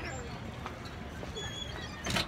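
Footsteps on a city sidewalk, a few hard steps, over faint murmured voices.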